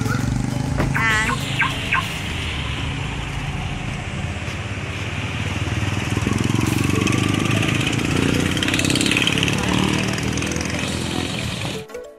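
Busy street traffic with motorcycle and motorised-tricycle engines running and the voices of people around, with a brief warbling tone about a second in. It cuts off suddenly near the end.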